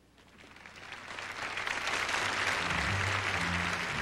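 Theatre audience applauding, swelling from silence over the first two seconds after a speech ends. Past the halfway point, music comes in underneath with low held notes.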